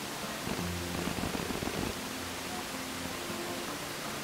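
A faint low droning hum from an unidentified source, heard in two stretches of about a second and a half each, over steady background hiss.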